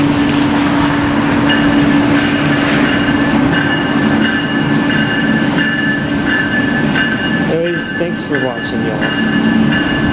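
Amtrak train at the station giving a steady low hum throughout, with higher steady whines joining about a second and a half in.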